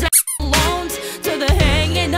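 Pop song with a sung vocal and steady bass beat; just after the start the bass drops out and a short, high squeaky sound cuts in, then the beat and vocal come back about a second and a half in.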